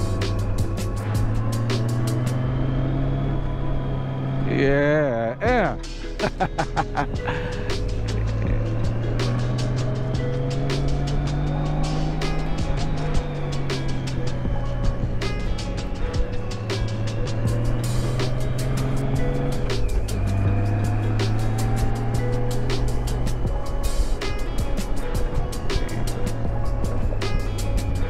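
Music playing over a motorcycle engine whose pitch rises and falls every few seconds as it is worked through a run of bends.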